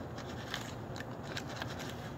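Knife sawing back and forth through soft food on a crumpled paper bag: a run of irregular small crisp scrapes and crackles.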